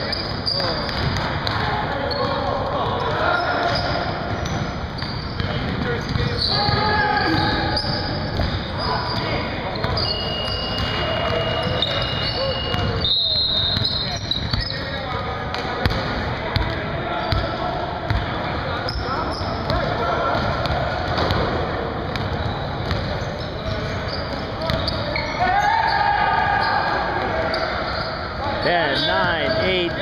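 Basketball being dribbled and bounced on a gym's hardwood floor during a game, with players' indistinct voices and shouts.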